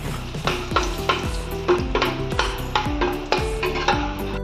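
Peanuts frying in hot oil in a kadai, sizzling as a spatula stirs them through the pan. Background music with a steady beat plays over it.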